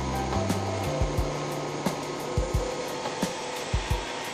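Steady rushing air noise from a compressed-air bench test: the air compressor running while it drives a prototype rotary vane expander engine. Background music with low bass notes and thumps plays over it.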